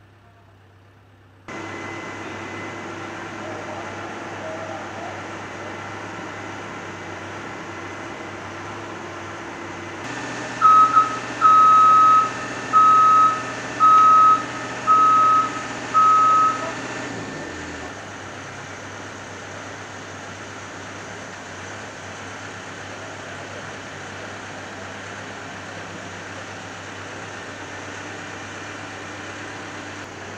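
Heavy construction machinery running steadily with a low engine hum. Partway through, a reversing-style warning alarm on the machinery beeps six times, about once a second, louder than everything else.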